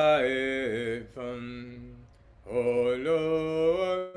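A man's voice singing a slow worship chant in long, held notes that glide gently in pitch. One phrase sounds at the start and trails off softly, and a second strong phrase comes in about halfway through and holds to the end.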